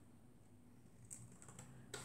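Near silence: room tone, with two faint clicks of scissors snipping paper, one about a second in and one near the end.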